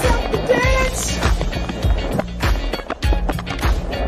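Background music: a dance track with a steady beat and a sung, gliding melody.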